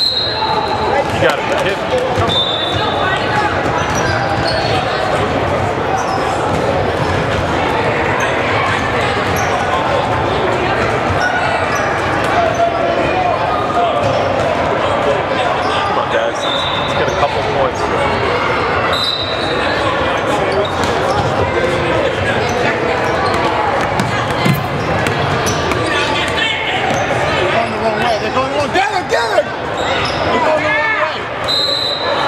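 Basketball game in a gym: steady crowd chatter with a ball bouncing on the hardwood court, and a few brief high-pitched squeaks.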